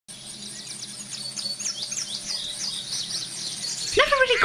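Birds singing, with many quick high chirps and trills, growing gradually louder.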